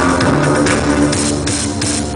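A live band playing synth-driven rock over a steady drum beat, about three hits a second, heard loud from within the concert crowd.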